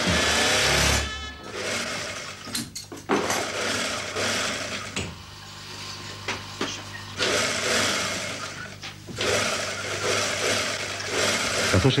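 Fur sewing machine running in spurts of one to three seconds with brief stops between, a steady low hum underneath.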